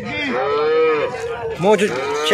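A cow mooing: one long call of about a second, rising then falling in pitch, followed by a shorter sound near the end.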